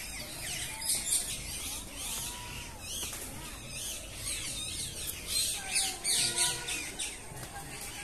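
Birds chirping in the trees: a rapid run of short, high, downward-sweeping notes, busiest about a second in and again in the last few seconds.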